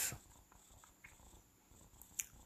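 Near silence: faint room tone with a couple of soft ticks.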